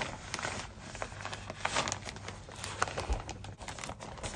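Thin plastic packaging bag crinkling and rustling in irregular crackles as a wig is stuffed into it.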